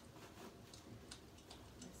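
Near silence with a few faint, unevenly spaced light clicks and rustles: hands handling a small wrapped gift box and working at its ribbon bow.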